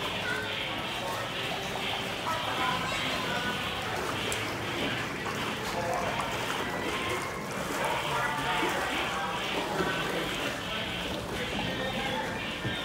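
Background music and indistinct voices over running water in a boat ride's flume channel.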